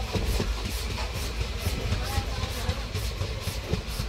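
A passenger train running at speed, heard from beside the coach: a steady rumble of wheels on the track mixed with the rush of wind.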